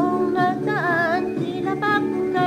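A woman singing a Filipino Christmas song with vibrato, over a backing track of sustained chords.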